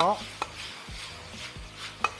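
Metal wok ladle scraping and knocking against a black iron wok as sweet and sour pork is stir-fried in its sauce, with a few sharp clinks over a light sizzle.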